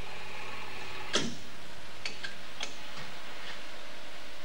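Panoramic dental X-ray machine running as its arm swings around the patient's head: a steady hum that stops with a sharp click about a second in, then a few lighter ticks.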